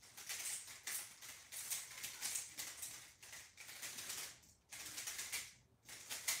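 A plastic 3x3 speedcube being turned fast in a timed solve: a continuous rapid clatter of layer turns, broken by a few brief pauses in the second half.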